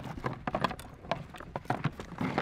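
Velcro straps being peeled open on a folded motion decoy frame, with the frame handled: a string of short, irregular rips and clicks.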